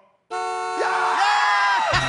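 Game-show winning sound cue: a sudden loud horn-like fanfare chord, signalling that all five numbers are right and the car is won. Screams and cheering rise over it about a second in.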